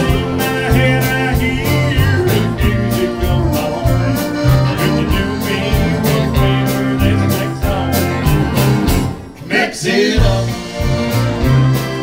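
A live country band plays a Tex-Mex style song on guitars, bass, drums, pedal steel and accordion, with a steady beat. About nine seconds in the band stops for a short break, then comes back in.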